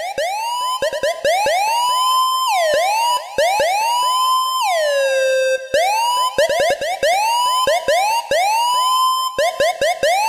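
Dub siren synth sound from Bram Bos Phasemaker, heavily compressed: rapidly retriggered notes that each swoop upward in pitch. A few notes are held and then slide back down.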